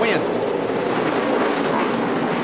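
The V8 engines of a pack of NASCAR Cup stock cars running hard together as the field races through the opening corners on a restart. It is a steady, dense engine noise.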